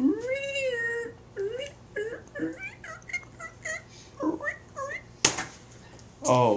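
Domestic cat meowing: one long meow that rises and then holds, followed by a string of short, higher cries. A sharp click comes near the end.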